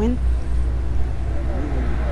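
Outdoor street background: a steady low rumble, with a faint voice briefly in the background near the end.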